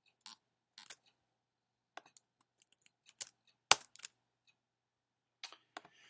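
Sparse, irregular clicks of computer keyboard keys being pressed, with one sharper click a little past the middle.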